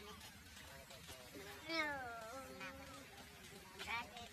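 A monkey calling: one drawn-out, cat-like whimpering call that falls in pitch and then levels off, about halfway through, and a short high call just before the end.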